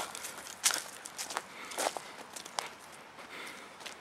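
Footsteps on a dirt trail strewn with dry leaves, about six uneven steps in the first two and a half seconds, then quieter.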